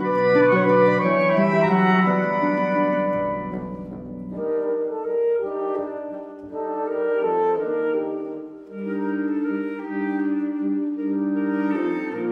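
A chamber wind ensemble with harp (flutes, oboe, clarinets, saxophones, bassoon and horns) playing a slow Adagio passage of held chords. A low bass line drops out about four seconds in, leaving sustained chords in the middle register.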